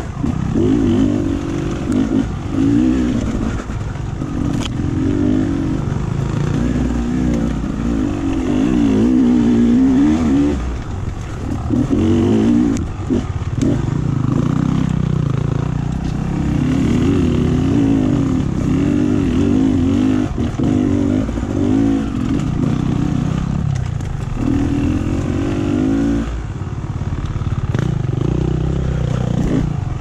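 Enduro dirt bike engine running as the bike is ridden over a rough trail, its revs rising and falling with the throttle, with a few brief knocks from the bike over the ground.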